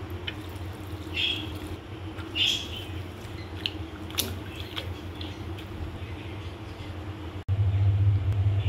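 Spinach leaves being rinsed and squished in water, with drips, over a steady low hum and a few short high chirps. About half a second before the end the sound cuts out for an instant and the low hum comes back louder.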